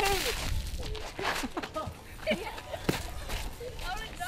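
A bucketful of water thrown over a person, hitting them and splashing onto the pavement in the first half second, followed by scattered shouts and voices.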